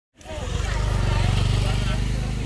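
A motorcycle engine idling close by, a steady low rapid pulsing, with people's voices over it.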